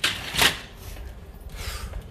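Sounds of a person doing a boxing workout: a sudden sharp noise about half a second in, then low thumps and rustling of movement.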